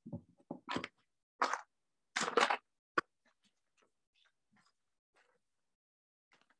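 Handling sounds of small craft items on a work table: a few short rustles and knocks, then one sharp click about three seconds in, followed by faint ticks.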